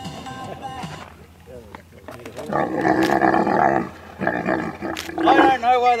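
Dromedary camel bellowing: two long, loud, rough groans, the first starting about halfway through and the second, shorter one following right after it.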